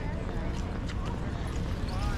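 Steady low rumble of wind buffeting the microphone of a body-worn action camera, with a few light knocks and faint, indistinct voices in the background.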